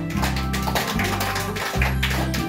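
Instrumental karaoke backing track of an enka song, playing with a steady beat and sustained bass notes between the sung lines.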